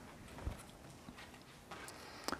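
Quiet pause in a lecture room: faint room tone with a single soft, low knock about half a second in.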